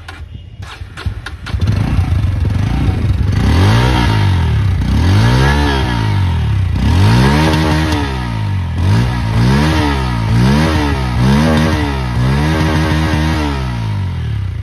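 Bajaj Pulsar N160's 165 cc single-cylinder engine, heard through its underbelly exhaust, comes to life about a second and a half in and is then revved over and over, about ten blips of the throttle, each rising and falling in pitch, quicker in the second half.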